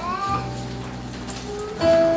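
Soft background music on a keyboard, with sustained chords held under the pause in the sermon. A short rising tone comes in at the start, and a new chord enters near the end.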